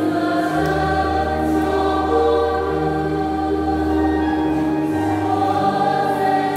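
Church choir singing a slow hymn with accompaniment, long held notes over a sustained low bass line.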